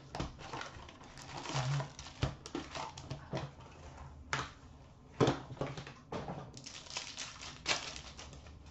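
Handling noise from a box of hockey card packs being opened: irregular rustling of cardboard and pack wrappers, with short crackles and taps as packs are set on a glass counter. Near the end a pack wrapper is torn open.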